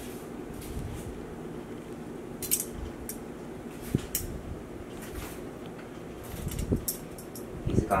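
Steady low room hum with a few light clicks and taps scattered through it, and a soft low rustle shortly before the end.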